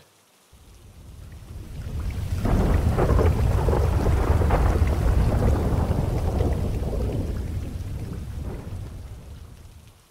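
A long roll of thunder with rain. It builds over the first two seconds and slowly dies away near the end.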